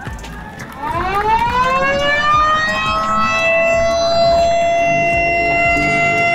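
Ceremonial inauguration siren sounded at the press of a button to mark the official opening. It starts about a second in, rises in pitch for about two seconds, then holds a loud, steady wail.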